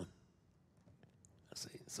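Near silence: a short pause in a sermon, with speech stopping at the start and a voice starting again about one and a half seconds in.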